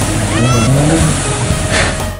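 Off-road SUV engine revving hard, the revs rising and falling, with its wheels spinning and churning through a water-filled mud pit: the vehicle is bogged down and struggling to get through. A short high rising squeal comes about half a second in.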